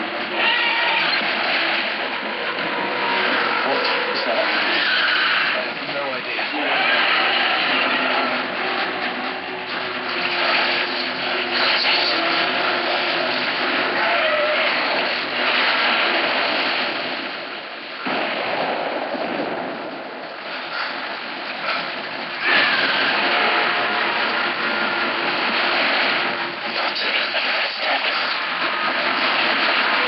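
Film sound effect of a torrent of water rushing and crashing through a room, loud and continuous, with voices shouting over it.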